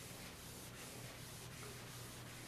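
Chalkboard eraser wiped across a chalkboard: faint, continuous rubbing made of repeated wiping strokes.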